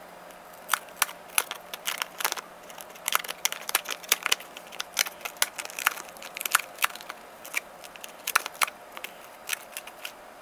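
Plastic vacuum-sealer bag crinkling and crackling in irregular sharp bursts as it is handled and pulled around a fiberglass frisbee.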